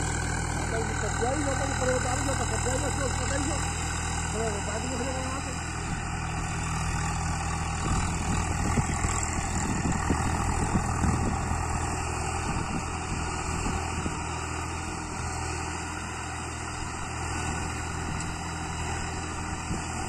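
Swaraj 744 XT tractor's three-cylinder diesel engine running steadily under load while driving a rotavator through the soil.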